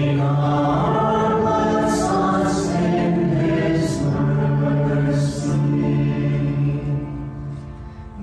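Responsorial psalm sung in church: voices held on long notes over a steady instrumental accompaniment, with a brief break between phrases near the end.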